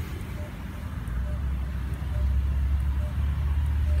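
Low steady rumble of outdoor background noise, fuller in the second half, with faint short pips about once a second.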